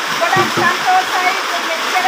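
A woman speaking rapidly in a high-pitched voice over a steady rushing hiss.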